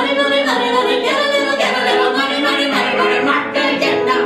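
A woman and a man singing together in a live cabaret duet, voices sliding between held notes.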